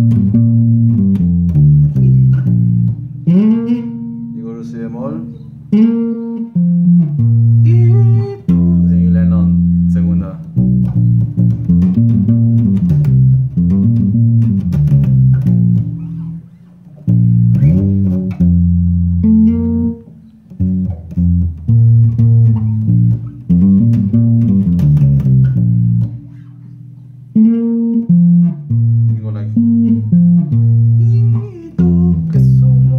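Five-string electric bass played through an amp: a norteño bass line of plucked low notes stepping up and down, with a couple of short pauses between phrases.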